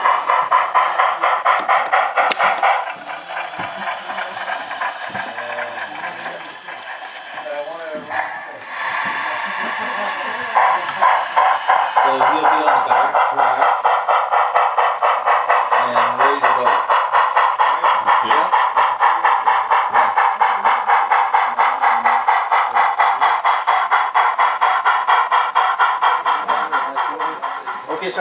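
HO scale model steam locomotive's sound decoder chuffing through its small onboard speaker at an even, quick beat of about four chuffs a second. The chuffs drop quieter about three seconds in and come back stronger about ten seconds in.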